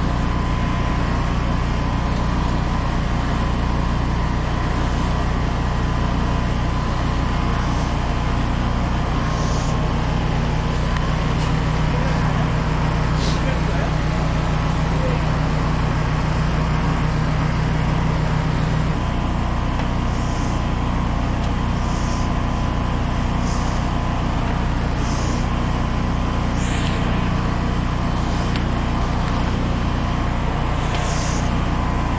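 High-pressure drain jetter's engine-driven pump running steadily with a low hum while the jetting hose is fed into a sewer pipe. One of its low tones drops out a little past halfway, and short hisses come and go later on.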